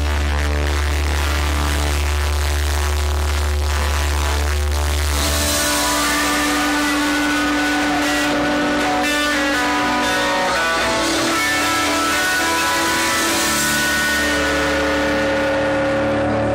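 A live rock band plays with electric guitars, bass, keyboards and drums at a loud, even level. A deep held bass note sounds for about the first five seconds, then drops away, leaving guitar and keyboard chords. No singing is heard.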